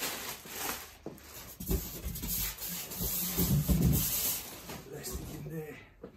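Plastic protective wrapping being pulled off a subwoofer, rustling and crinkling in uneven bursts, with a few dull knocks from handling the heavy cabinet.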